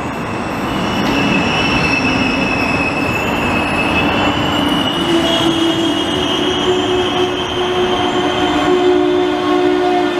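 Israel Railways double-deck passenger train rolling past along the platform: a steady rush of wheels on rail with a high tone running through it, and lower steady tones joining about halfway through.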